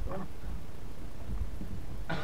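Handling noise from a phone microphone rubbing against a blanket: a steady low rumble with faint rustling.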